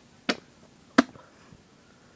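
A person spitting tobacco dip juice into a glass spit jar: two short, sharp spits about two-thirds of a second apart, the second louder.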